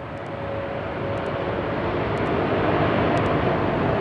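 Jet aircraft engine noise: a steady rushing sound that grows gradually louder, with a faint steady whine that fades out about halfway through.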